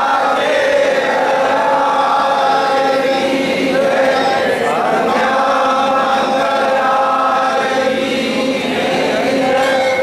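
A crowd of devotees singing a Hindu aarti together in a loud, steady chant, with the voices holding long notes.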